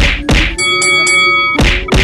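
Four hard whacks of punches, two close together at the start and two near the end. Between them comes a bright ringing chord of several steady tones, over a steady low hum.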